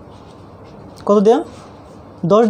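Low steady room hiss, broken about a second in by a single short spoken word or syllable in a woman's voice.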